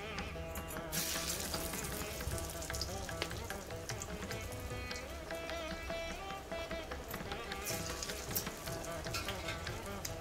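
Paruppu vadai (lentil fritters) deep-frying in hot oil in a kadai, a steady sizzle that grows louder about a second in, under background instrumental music.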